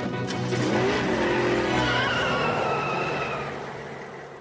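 Cartoon sound effect of a vehicle skidding and rushing off in a burst of noise that fades away over the second half, with music underneath.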